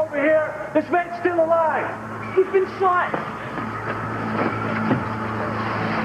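A woman wailing and crying out in distress, with long, drawn-out high cries over the first three seconds, then a steady low hum with background noise.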